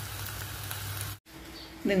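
Pork pieces sizzling as they fry in a pan, a steady hiss that cuts off suddenly about a second in.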